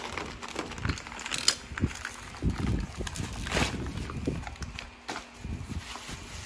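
Newspaper packing being crinkled and pulled open by hand, with irregular rustling and crackling.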